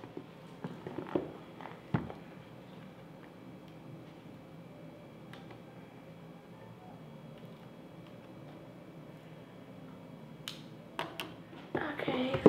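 Cardboard packaging box being handled: a few light clicks and taps in the first two seconds and again near the end, with quiet room tone in between.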